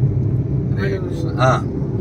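Steady low rumble of road and engine noise heard inside the cabin of a moving car. A short voice sound comes about a second in.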